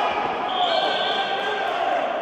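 Coaches and spectators shouting during a wrestling takedown, with a thump of bodies going down on the mat.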